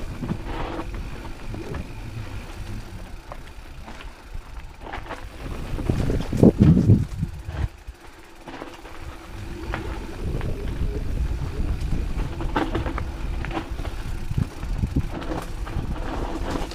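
Rocky Mountain 790 MSL full-suspension mountain bike descending dirt singletrack: a steady rush of wind and tyre noise with the bike's frame and chain rattling and knocking over bumps. The loudest rough surge of noise comes about six to seven seconds in.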